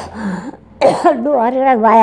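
A short cough right at the start, then a person talking after a brief pause.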